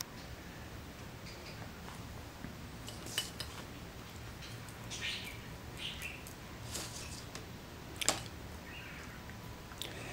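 Faint room hiss with a few light clicks and short scraping rustles of small objects being handled; the sharpest click comes about eight seconds in.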